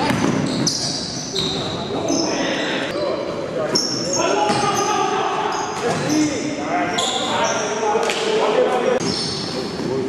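Basketball sneakers squeaking on a hardwood gym floor in many short, high-pitched squeaks, with the ball bouncing and players' voices echoing in a large hall.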